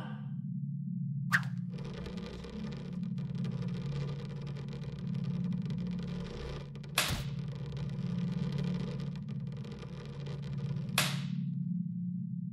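Sound effects for an animated scene: a steady low hum with a hissing wash over most of it, and three sharp hits, about a second in, a little past halfway and near the end.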